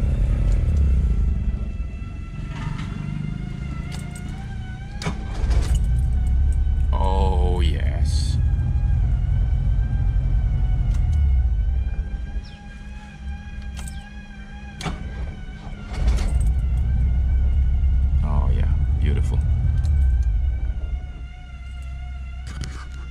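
Cabin sound of an Alfa Romeo Alfetta 2000 on the move: a low rumble of engine and road that drops away twice for a few seconds as the car slows during brake tests, then comes back.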